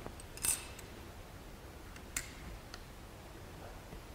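A glass microscope slide being set on the microscope's stage and fitted under its clips: a few light clicks and scrapes, the loudest about half a second in.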